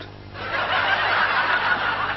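Audience laughter: many people laughing together, starting about half a second in and beginning to fade near the end.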